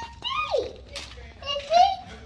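Young children's high-pitched voices chattering and vocalising without clear words, including one falling vocal glide about half a second in.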